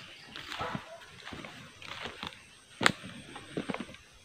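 Footsteps squelching and rustling over wet, muddy ground and weeds, with one sharp click about three seconds in.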